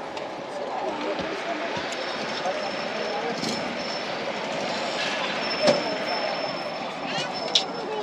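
Steady road and engine noise heard from inside a moving vehicle, with faint background voices and a sharp click about five and a half seconds in.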